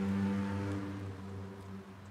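A steady low hum with several evenly spaced overtones, slowly fading.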